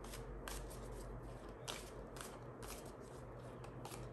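A tarot deck being shuffled by hand, overhand: cards slide and flick against each other in soft, crisp strokes, a few per second at an uneven pace.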